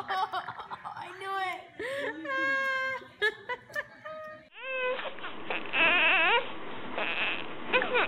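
A boy laughing hard in short repeated bursts. About halfway through, after a cut, an infant cries in a few short rising wails.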